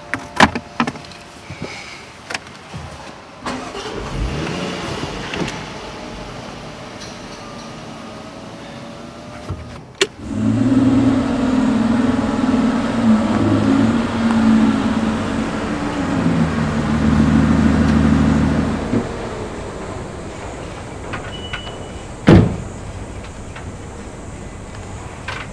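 A few clicks and knocks at first, then a car engine running for about nine seconds, its pitch shifting up and down a little before it stops. Near the end comes a single loud thump, a car door shutting.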